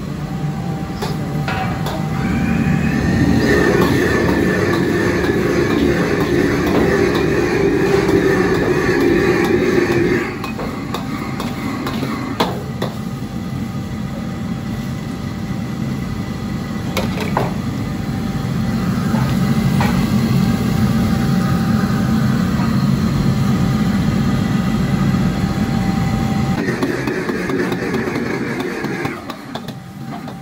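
Commercial gas wok burner running under a wok, with a steel ladle scraping and knocking against the wok as broccoli and egg are stir-fried. The burner noise grows louder from about three seconds in to about ten seconds, and again from about eighteen to twenty-six seconds, with a few single sharp ladle knocks in the quieter stretch between.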